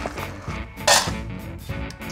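Background music, with a brief clatter about a second in of dry dog kibble landing in a plastic food bowl.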